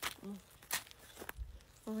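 A few short footsteps, heard as sharp scuffs, between a woman's brief "oh" and her next words.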